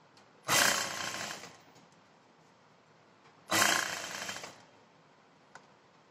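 Juki industrial sewing machine running in two short stitching runs, each about a second long, starting sharply and tailing off. A faint click comes near the end.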